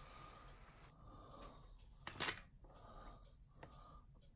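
Faint handling of a small hand tap in its tap handle against a diecast metal part, with one light click about two seconds in.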